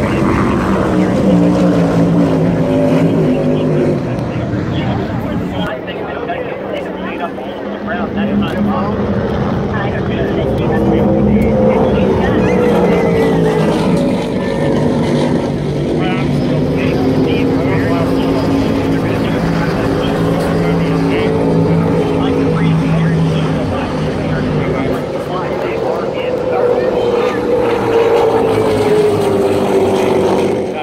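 Offshore superboat race engines droning across the water at speed, mixed with a low-flying helicopter; the drone's pitch slowly rises and falls as the craft pass.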